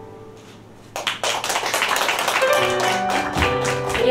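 The song's final sustained keyboard chord fades out, then about a second in the audience breaks into quick, dense applause. Music comes in under the clapping about halfway through.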